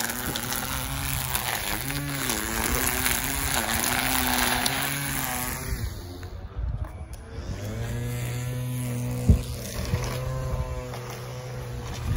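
String trimmer's small engine running while its line cuts grass, the pitch dipping and coming back up a few times as the throttle is worked. The cutting noise thins out about halfway through while the engine keeps running steadily, with one sharp knock a little after three quarters of the way.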